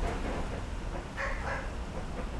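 Low, steady rumble of street traffic on old film sound, with two short calls about a second and a half in.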